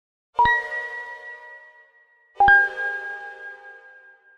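Two bell-like chime notes as a logo sound effect: a sharp strike about half a second in that rings and fades, then a second, lower-pitched strike about two seconds later that rings out longer.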